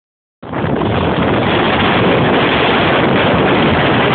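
Loud, steady rush of wind buffeting a phone's microphone, cutting in about half a second in.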